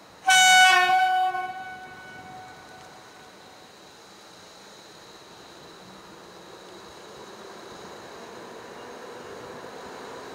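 Locomotive horn giving one short blast, the Polish Rp1 'attention' warning signal, with an echo trailing off. Afterwards a low rumble builds slowly as the train approaches.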